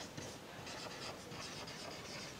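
Marker pen writing on a whiteboard: a run of short, faint strokes as letters are written one after another.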